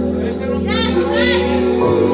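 Live music holding a sustained chord over a steady low bass note, with a few short high vocal sounds over it about halfway through.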